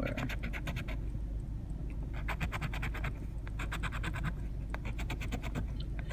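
A coin scratching the coating off a paper scratch-off lottery ticket in rapid strokes. It comes in bursts, with a pause of about a second after the first second.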